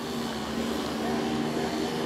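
Steady mechanical hum with a faint, even tone running under it.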